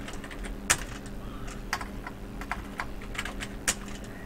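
Typing on a computer keyboard: about ten separate key clicks at an uneven pace as a word is typed, the loudest shortly after the start and near the end.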